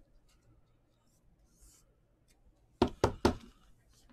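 Faint plastic handling ticks as a trading card goes into a rigid plastic top loader. About three seconds in come three quick, sharp knocks of the top loader against the tabletop.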